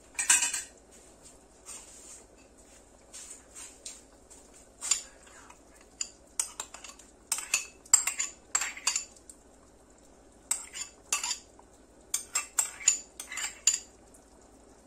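A spoon clinking and scraping against a ceramic bowl and a cooking pot as tomato paste is scraped out into the pot, in irregular clusters of sharp clinks with short quiet gaps.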